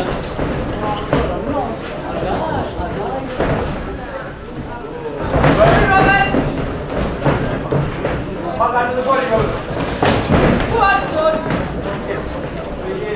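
Amateur boxing bout: spectators and cornermen shouting, in several bursts from about five seconds in, over a steady hubbub and scattered thuds of gloved punches and feet on the ring canvas.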